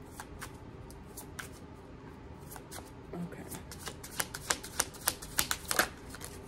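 A deck of oracle cards shuffled by hand, overhand from one hand to the other: soft, quick card clicks and slaps, sparse at first and coming fast and louder in the last two seconds.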